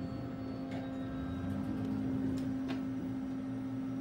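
Steady low hum inside an Otis hydraulic elevator car, with a couple of faint clicks.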